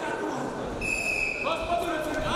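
Dull thuds of wrestlers' feet and bodies on the wrestling mat during a standing tie-up, in a large hall. A short, high, steady tone sounds about a second in, and voices are heard in the hall.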